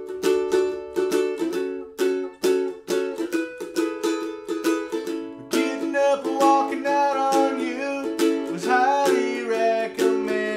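Ukulele strummed in a steady rhythm. About halfway through, a man's singing voice comes in over it.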